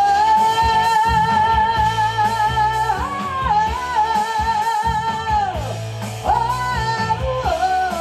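Live rock band playing: a woman sings one long held note with vibrato for about five seconds, then starts a new phrase, over electric guitar, bass guitar and drum kit.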